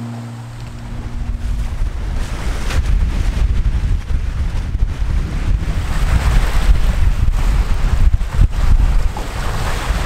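Strong gusting wind buffeting the microphone, with wind-driven waves washing onto the shore of a lake. The wind is around 70 km/h. The last of a music track dies away in the first second or two.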